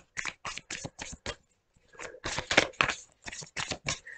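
A deck of tarot cards being shuffled by hand: a quick run of soft card slaps, about five a second, in two bursts with a short pause between.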